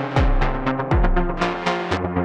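Eurorack modular synthesizer playing a sequenced patch: a fast run of short, bright pitched notes over a deep kick drum whose pitch drops on each hit. The synth line ducks in volume around the kicks.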